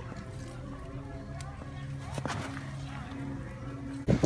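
Faint voices of people talking in the background, with a couple of light clicks about two seconds in.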